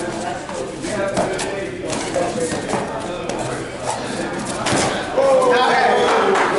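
Shouting and calls from the people around a sparring mat, with several sharp slaps of gloved punches and padded kicks landing. Near the end a louder drawn-out shout rises as the fighters go down to the mat.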